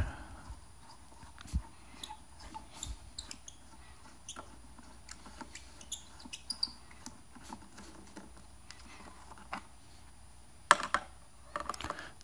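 Phillips screwdriver backing out the screws of a portable speaker's battery door: faint, scattered small clicks and scrapes of the driver turning in the screw heads, with a few sharper clicks near the end.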